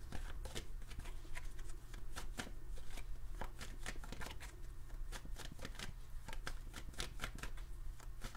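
Tarot cards being shuffled by hand: a quick, uneven run of light card snaps and flutters over a low steady hum.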